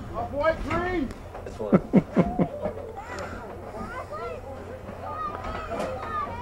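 Girls shouting and hollering, several high voices overlapping, with a run of short loud yells about two seconds in.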